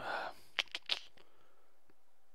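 A short breath out, then a few faint sharp clicks spaced irregularly over the next second and a half.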